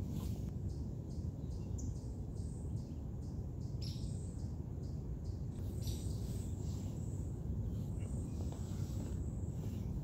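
Summer woodland ambience: insects chirping in a steady pulse, about twice a second, over a constant low rumble, with a couple of short bird chirps about four and six seconds in.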